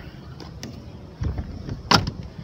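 A low rumbling background with a soft thump a little past halfway, then one sharp click just before the end.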